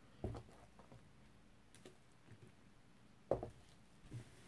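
Two soft knocks about three seconds apart, with faint ticks between, as a paint-covered vinyl record is handled and settled flat on its support cups.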